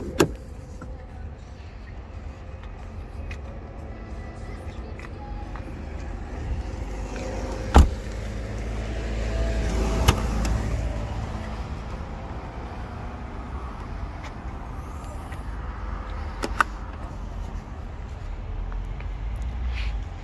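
A car door shuts with a thump about eight seconds in. A couple of seconds later the powered tailgate of a Mercedes-Benz C200 estate unlatches with a click, and its electric motor hums as the tailgate lifts open.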